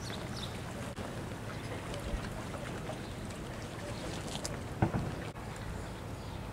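Steady wind noise on the microphone over a low steady hum, with a single short knock about five seconds in.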